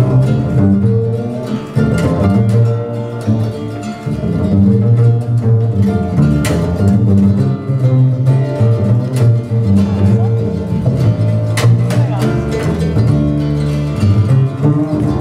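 Upright double bass played pizzicato, a run of plucked low notes in a bass solo.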